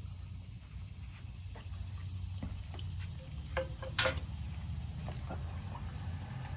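A metal fork set down on a table with one sharp clack about four seconds in, over a steady low hum and a few faint small clicks.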